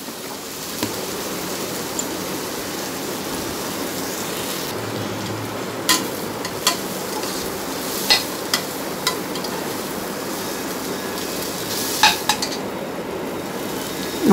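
Sliced onions and green chilli frying in oil in an aluminium pressure cooker pan, with a steady sizzle. A metal ladle stirs and clinks against the pot several times: about six seconds in, around eight to nine seconds, and again near the end.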